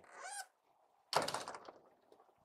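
The large rear engine-compartment hatch of a diesel-pusher motorhome being pulled down and shut, closing with a single thunk about a second in.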